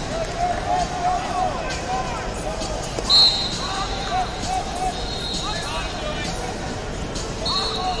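Busy wrestling-arena hubbub with many short squeaks of wrestling shoes on the mats. There are thin high whistle tones through it, one brief loud whistle blast about three seconds in.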